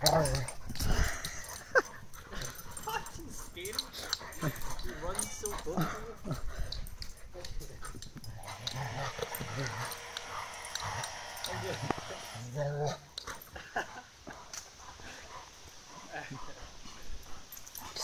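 A Rottweiler and a Cane Corso play-fighting, with scattered short, low growls and scuffling throughout and a louder outburst about two-thirds of the way through.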